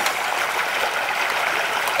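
Steady sound of running water, an even rushing hiss with no breaks.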